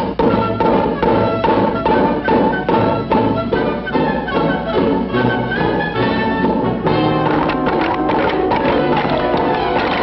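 Brisk orchestral cartoon score with brass and a regular run of sharp, wood-block-like percussion hits, about two or three a second.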